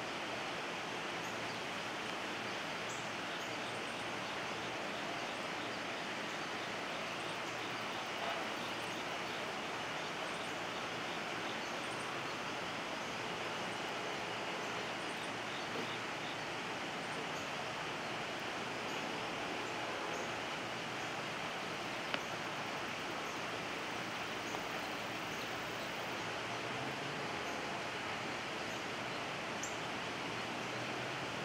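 Steady outdoor background noise, an even hiss with no distinct source, broken only by a few faint clicks, one sharper than the rest about two-thirds of the way through.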